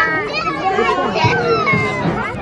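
Lively chatter of children and adults talking over one another, with high-pitched children's voices among them.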